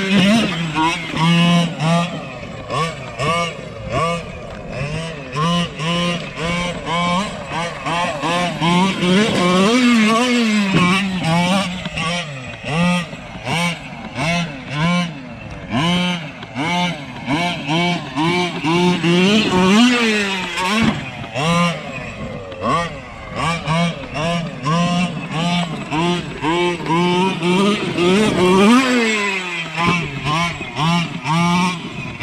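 Losi MTXL RC monster truck's small two-stroke petrol engine, buzzing steadily at low throttle between repeated short bursts of revving that rise and fall in pitch, with a few longer, bigger revs as the truck is driven hard.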